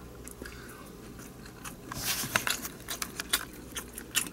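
A person chewing a mouthful of cold, unheated diced bacon, heard close up as soft mouth clicks that start about a second and a half in.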